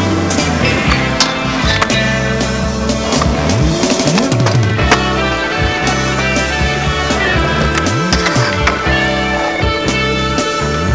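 Rock music playing over skateboard sounds: urethane wheels rolling on pavement and the sharp clacks of the board hitting the ground.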